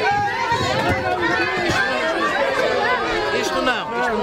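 Several people talking at once, their voices overlapping into a steady chatter with no single speaker standing out.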